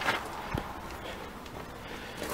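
Quiet footsteps on gravel over a steady background hiss, with one small knock about half a second in.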